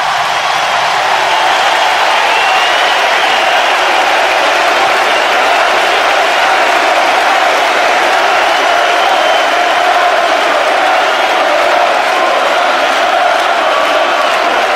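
A large stadium crowd cheering and applauding in a steady, dense ovation, with scattered whoops and shouts rising out of it.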